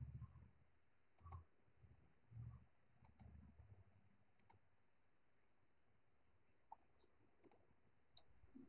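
Computer mouse clicking through a meeting participant's microphone: four faint double clicks, a second or more apart, over near-silent room tone.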